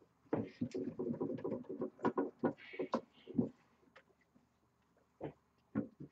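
Cloth rubbing and squeaking on the glossy new paint of a steel toy trailer during hand polishing, with short clicks and taps as the trailer is handled; a low wavering squeak in the first second and a half, then a quiet spell near the end.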